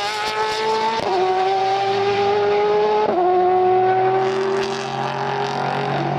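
Car engine accelerating hard through the gears. Its note climbs slowly, then drops sharply at an upshift about a second in and again about three seconds in, before running on at a steadier pitch.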